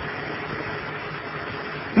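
Steady background hiss with no speech, even and unchanging, in a pause of a lecture recording.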